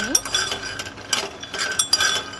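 Raw peanuts rattling and clicking against a non-stick pan as they are stirred while dry-roasting, in a quick irregular series of small knocks.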